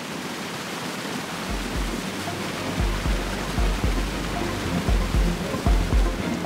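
Floodwater rushing steadily out of a large pump discharge pipe into open water, the pumps draining the flooded town. From about a second and a half in, music with a steady low beat comes in over it.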